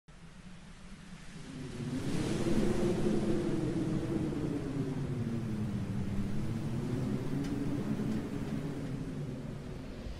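Deep rumbling sound effect for an animated logo intro: a low, slowly wavering drone that swells in over the first two seconds and holds, ending with a brief brighter hit as the logo appears.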